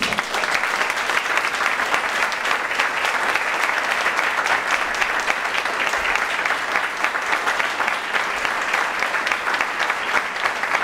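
Audience applauding: dense, steady clapping that breaks out suddenly and keeps on without letting up.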